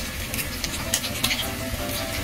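Pork and squid tempura shallow-frying in hot oil in a frying pan: a steady sizzle with dense, irregular crackling pops.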